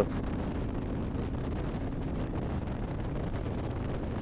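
Harley-Davidson Electra Glide's V-twin engine running steadily at highway cruising speed, about 140 km/h, mixed with wind rushing over the microphone.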